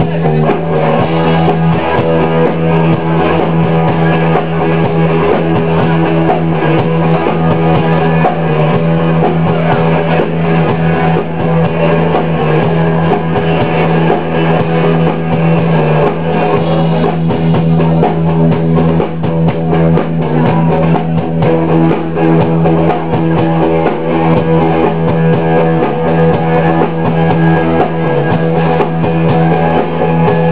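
Live rock band playing an instrumental passage: electric guitar and electric bass over a steady held low note.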